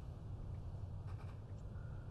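Quiet room tone: a low steady hum with faint rustling a little after a second in.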